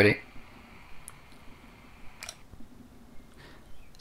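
Retevis PMR446 walkie-talkie receiving a carrier with no speech on it, giving a faint steady hiss. A little over two seconds in, a click and the hiss stops as the transmission ends: the receiver closes its squelch silently, with no squelch crash.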